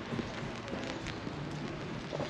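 Outdoor ambience of light rain on a wet town square: a steady, even hiss with faint scattered ticks.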